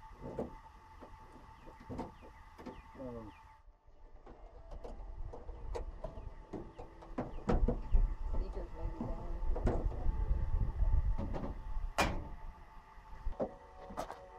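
Hand tools and metal fittings clicking and knocking as a man works with a wrench inside the open housing of an MEP-802A generator, with one sharp loud click about twelve seconds in. The sound changes abruptly about four seconds in, and a low rumble runs under the later part.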